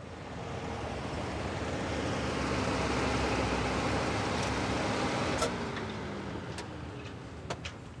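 A road vehicle passing by: engine and tyre noise that swells over the first few seconds, then fades away with a falling pitch.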